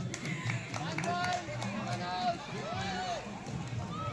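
Several young voices shouting and calling over one another, players and onlookers during a kabaddi raid, with a few short sharp sounds in the first second and a half.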